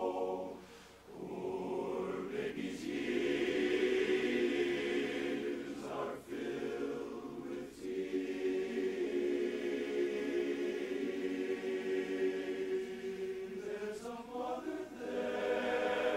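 Men's barbershop chorus singing a cappella, holding sustained close-harmony chords with short breaks between phrases, about a second in and again around six and eight seconds.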